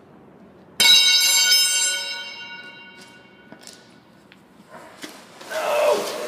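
A metal crowbar hitting a concrete floor: one sharp metallic clang about a second in, ringing on in several high tones that fade over about two seconds.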